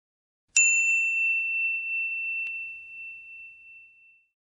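A high, clear bell-like chime struck about half a second in and again at the same pitch about two seconds later, ringing on and slowly fading away.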